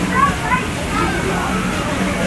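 Water rushing and sloshing along a river rapids ride channel, with short bursts of people's voices in the first second.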